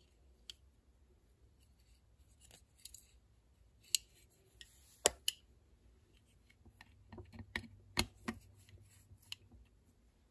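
Scattered sharp metallic clicks and taps as a folding hex key set is handled and a hex key is fitted into a screw in a cast-iron vise base, with a quick run of clicks about seven to eight seconds in.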